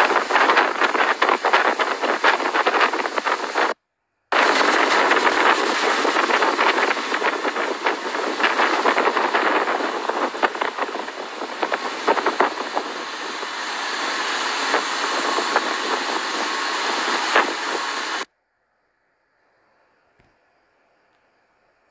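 Motorboat running fast at sea: wind buffeting the microphone and the rush of the churning wake, with the engine underneath. The noise cuts out for a moment about four seconds in, then stops abruptly shortly before the end.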